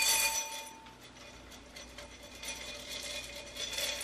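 Reusable crystal ice cubes clinking inside a wine glass, the glass ringing. A ringing clink at the start dies away within about a second, followed by lighter clinks later on.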